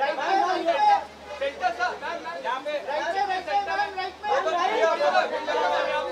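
Several voices talking and calling out over one another, with no single clear speaker.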